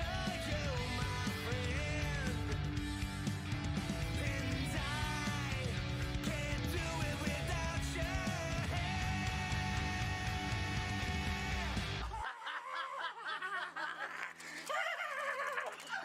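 Punk rock song with a singing voice, electric guitars and drums. It stops abruptly about twelve seconds in, leaving quieter, wavering sounds.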